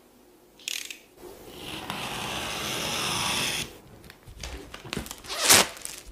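Plastic shrink-wrap being slit and torn off a smartphone box: a short scrape, then a long hissing tear of about two seconds, then scattered crackles and a loud crinkle of the film near the end.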